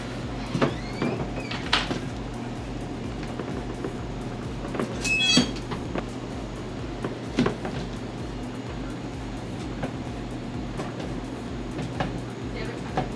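A lever-arm cheese cutter, a steel blade on a pivoting handle over a round steel base, cutting a block of cheddar. It makes a few clunks as the arm comes down and the blade hits the base, with a brief high metallic squeal about five seconds in.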